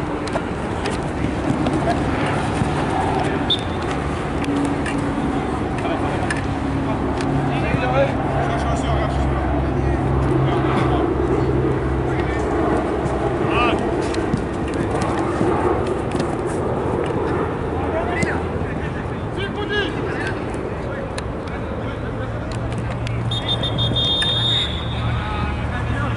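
Players' scattered shouts and calls during an outdoor five-a-side-style football match, over a steady low hum of urban traffic. A short, high whistle blast sounds near the end.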